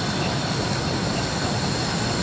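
Steady rushing kitchen background noise with faint high-pitched whines and no distinct knocks or clatters.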